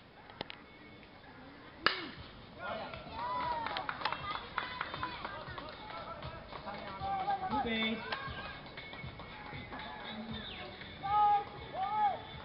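A bat cracks against a ball about two seconds in, the loudest sound, followed by several people shouting and calling out, with loud shouts again near the end.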